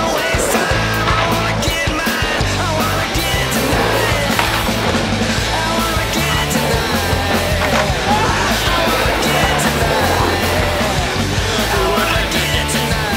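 Loud rock music laid over the footage: drums, a bass line stepping between notes, and a pitched lead line above.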